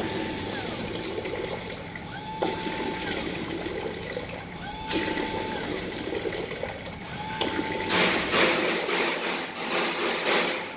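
GZL-80 twin magnetic pump liquid filler running automatic fill cycles, about one every two and a half seconds. Each cycle starts with a click and a short tone as the pumps switch on, then pump hum and liquid rushing through the tubes and out of the nozzles. The rushing grows louder near the end.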